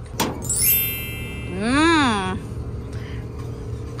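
Metal click of a classic Chevrolet DeLuxe's hood latch being released, then a high rising squeak from the hood hinges as the hood is lifted. A steady low hum runs underneath.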